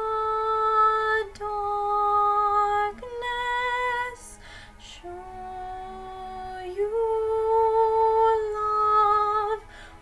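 A woman singing a slow ballad solo in a soft, classical-crossover style, holding long steady notes. She takes a quick breath a little after four seconds in.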